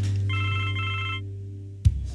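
Cell phone ringing with an incoming call: a short electronic ringtone of several steady high tones, about a second long with a brief break in the middle. A low music bed fades under it, and a sharp click comes near the end.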